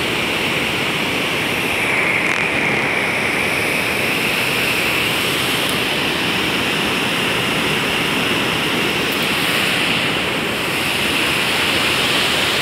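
Steady, unbroken rush of a large waterfall and the white-water rapids below it, Upper Mesa Falls on the Henrys Fork of the Snake River.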